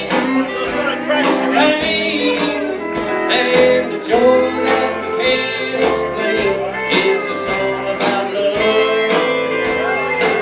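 A live country band plays an instrumental break: an electric guitar plays a lead with bent notes over bass and drums keeping a steady beat.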